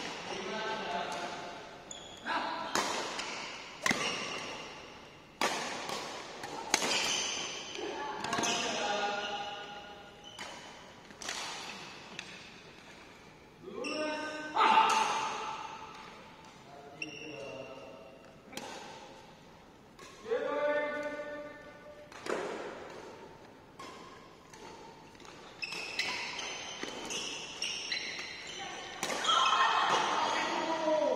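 Badminton rackets striking a shuttlecock in a doubles rally, heard as short sharp hits at irregular intervals, with players' voices in between.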